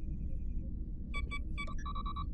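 Sci-fi computer interface beeps from a handheld PADD being operated: a quick run of soft pulsing tones, then about a second in a busier string of sharp beeps and chirps. A low steady hum of starship bridge ambience sits beneath.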